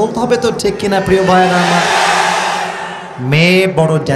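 A man's amplified voice, then a large crowd shouting back in unison for about a second and a half, loud and sustained before it fades, followed by a short rising call.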